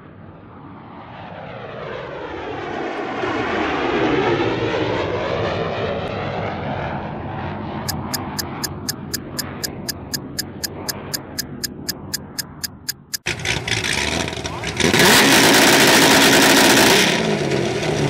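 A swelling whooshing sound with gliding pitch builds up, and a film-countdown leader ticks about three to four times a second. After a sudden cut, a C6 Corvette's V8 exhaust runs at idle, and near the end a loud burst of exhaust noise lasts about two seconds, a rev.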